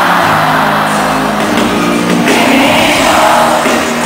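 Live R&B concert music: a band plays under singing, with the audience's voices mixed in, recorded from within the crowd in a large hall.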